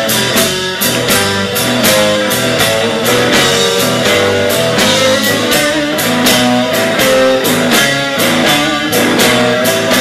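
Live band playing blues-rock: electric guitar over a steady drum beat with cymbals, about three to four strokes a second.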